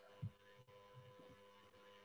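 Near silence: faint room tone with a steady low hum, and a single soft low thump about a quarter second in.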